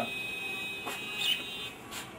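A steady high-pitched whine, with a faint click about a second in.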